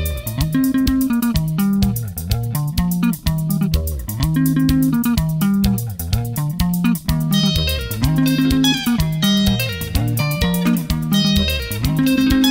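Instrumental break of a Zimbabwean sungura song: fast picked electric guitar lines over a repeating bass guitar line and a steady drum beat, with the higher lead guitar coming forward about halfway through.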